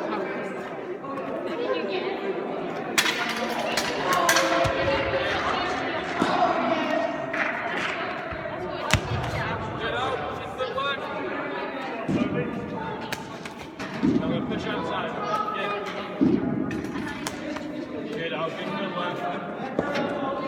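Voices chattering in a large, echoing sports hall, with several thuds a few seconds apart as a cricket ball bounces on the hard floor and is taken in wicketkeeping gloves.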